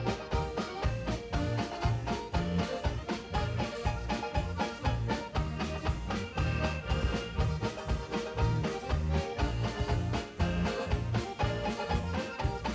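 A polka played live by a small band of accordions and banjo over a steady bass beat.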